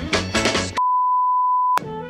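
Upbeat music stops abruptly just under a second in. A steady single-pitch electronic beep follows, like a censor bleep, and lasts about a second before cutting off with a click.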